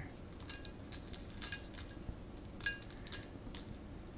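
Faint, scattered light clicks of filled two-piece hard capsules dropping out of a manual capsule filling machine's plate into a small container as they are pushed out by finger. The clearest click comes about two-thirds of the way in.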